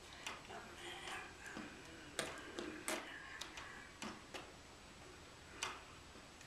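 Faint, scattered clicks and taps, about seven in all, from hands meeting and slapping lightly while signing in ASL.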